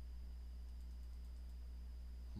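Steady low electrical hum with a faint high whine and light hiss: the recording's background noise between spoken remarks.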